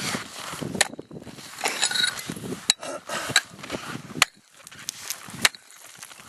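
A long-handled tool knocking and scraping against cut blocks of lake ice floating in water, prying the first block loose: several sharp knocks a second or two apart, with scraping between.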